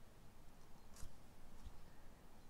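Faint handling of paper and card as they are pressed flat and positioned by hand on a craft mat, with one light click about a second in.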